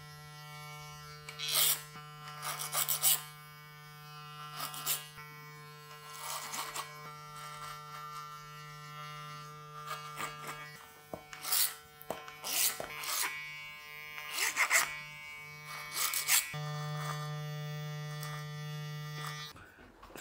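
Electric hair clippers running with a steady buzzing hum, cut over a comb with short louder bursts as they pass through the hair. The hum weakens about halfway through, returns stronger near the end, and cuts off just before the end.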